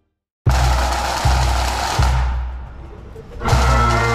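Pipe band drums: bass drum beats about every three-quarters of a second under a snare drum roll, starting suddenly after a brief silence. Near the end the bagpipes strike in with their steady drones.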